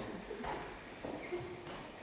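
Quiet room tone of a hall, with a few faint low thuds in the first second.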